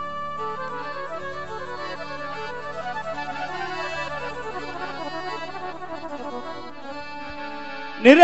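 Harmonium and a Roland Juno-G electronic keyboard playing an instrumental melody over a steady low drone: the introduction to a Rajasthani devotional bhajan, with no singing yet.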